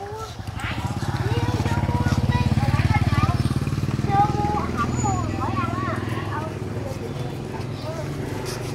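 Small motorbike engine running as it rides past, growing louder to a peak about two to three seconds in and then fading away.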